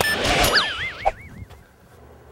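Comedic teleport sound effect: a noisy whoosh, then a smooth electronic tone that warbles up and down and fades out about a second and a half in.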